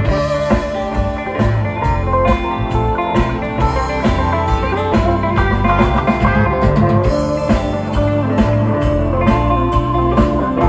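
Live twang-funk band playing an instrumental passage without vocals: banjo and electric guitar over electric bass, keyboard and drums, with a steady beat.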